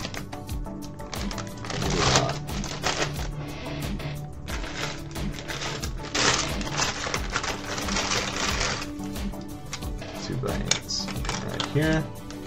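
Small plastic building bricks clicking and clattering and a plastic parts bag rustling as hands sort through loose pieces, with denser rustling about two seconds in and again from about six to nine seconds, over steady background music.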